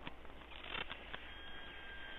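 Faint clicks of small aluminium parts and a hand tool being handled at a workbench, with a faint thin high tone starting partway through.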